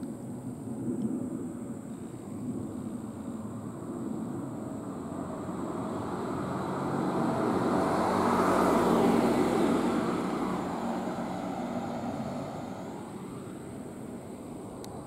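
A road vehicle passing by on the street, its tyre and engine noise growing louder to a peak about eight to nine seconds in and then fading away.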